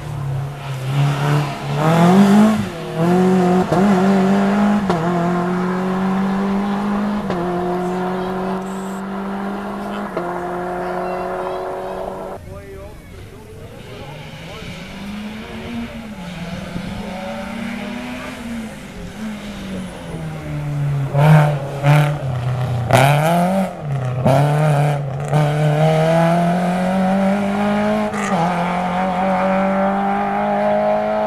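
Rally car engines at full throttle, revving up through a series of quick gear changes as a car accelerates away, cut off suddenly about twelve seconds in. Another rally car then approaches, comes off the throttle and downshifts with a few sharp cracks, and accelerates away again up through the gears.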